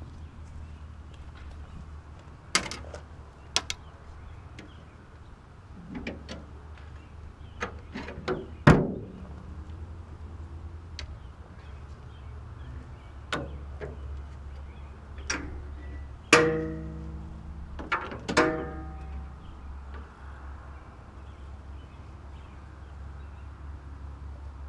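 Scattered metal clicks and knocks as the hood of a 1953 Studebaker is raised and propped open. The loudest are two metal clanks about two-thirds of the way through, each left ringing.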